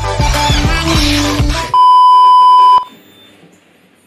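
Music with a steady beat cuts off, then a television colour-bar test tone sounds: one loud, steady, high beep lasting about a second, followed by faint hiss.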